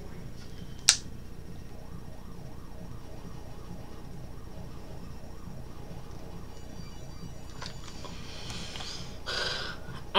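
A hard-to-open package being worked at with hands and teeth: one sharp click about a second in and a short rustle near the end, over a steady low background hum.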